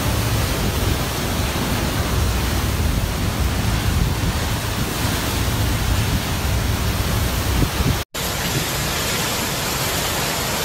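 Hurricane wind and driving rain: a loud, steady rush of noise, with heavy wind rumble on the microphone. It cuts out for an instant a little after eight seconds in, then goes on with less rumble.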